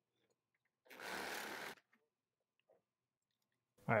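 A reciprocating saw cutting through a PVC drain pipe in one short burst of under a second, about a second in.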